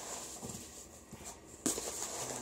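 Cardboard box and packing peanuts rustling as hands dig through the box, with a sharper burst of rustling about one and a half seconds in.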